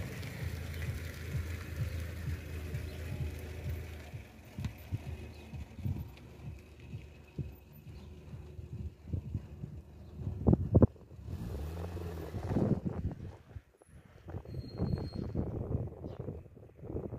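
A car drives up and slows to a stop, its engine running low, while gusts of wind buffet the microphone.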